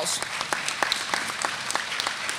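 An audience applauding, many hands clapping at once.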